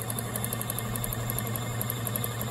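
Toy mini washing machine for beauty sponges running, its small motor spinning the drum with a steady hum that sounds like a real washer.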